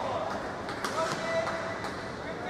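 Badminton rally on an indoor court: two sharp racket strikes on the shuttlecock about a second apart, with shoes squeaking on the court floor.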